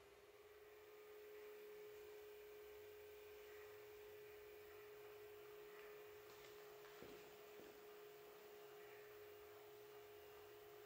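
Near silence with one faint, steady, unchanging hum, and a couple of faint clicks about seven seconds in.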